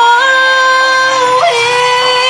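Woman singing a long, wordless held note, with a quick flip in pitch about one and a half seconds in before she settles on another held note with vibrato.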